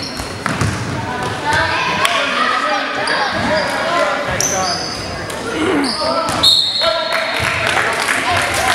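Basketball bouncing on a gym floor, with short high sneaker squeaks and players and spectators shouting and talking, echoing in the large hall.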